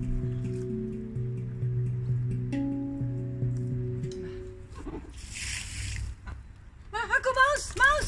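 Handpan music plays for the first half, then stops. About five seconds in there is a brief slosh of water poured from a bucket into a small plastic pond, and near the end comes a quick run of short quacks from a duck.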